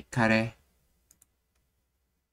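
A brief voice in the first half-second, then two quick, faint computer mouse clicks about a second in.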